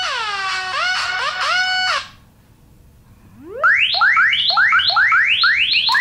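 Electronic phone ringtones playing. First come synthetic notes that slide down and hold, stopping about two seconds in. After a short pause, a different tone of quick rising sweeps, about three a second, begins.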